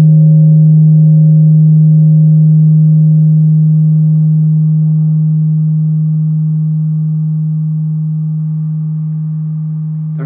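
A large gong ringing on after being struck: one deep steady hum slowly fading away, with fainter higher overtones.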